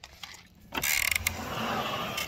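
Slurping an iced drink through a plastic straw from a plastic cup, a grainy sucking noise that starts about three-quarters of a second in and runs on steadily.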